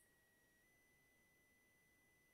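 Near silence, with only a very faint steady high-pitched tone.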